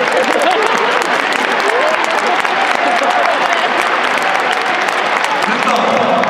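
Stadium crowd applauding steadily, a dense patter of many hands clapping with voices mixed in.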